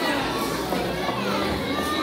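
Many children's voices at once, overlapping at a steady level.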